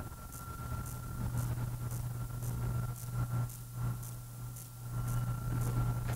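Room tone: a steady low hum with a thin, faint high tone above it and faint ticks about twice a second.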